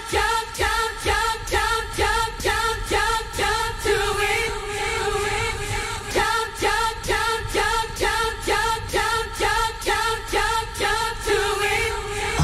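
Electronic dance music from a DJ mix in a breakdown with no kick drum: a chopped, pitched riff repeats about three times a second. A held note about four seconds in briefly breaks the pattern.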